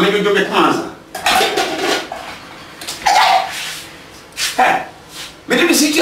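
Voices talking in a language other than English, with light clinks of glass or crockery.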